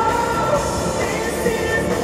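Loud amplified live pop music filling an arena, recorded from within the crowd.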